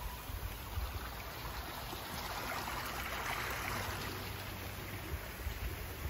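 Steady rush of running water, as from a stream or waterfall, swelling a little in the middle, with a low rumble underneath.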